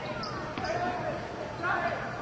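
A basketball bouncing on a hardwood court during game play, with a sharp knock about half a second in, over voices in the arena.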